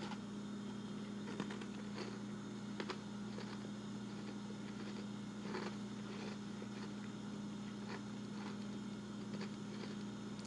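Faint, irregular crunches and clicks of someone chewing a bitten Oreo cookie, over a steady low hum.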